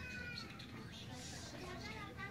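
A young child's high-pitched, meow-like cries, one at the start and another near the end, over a background murmur of store chatter.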